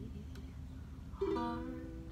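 Ukulele strummed: a chord rings out and fades, then a fresh strum just over a second in sets a new chord ringing.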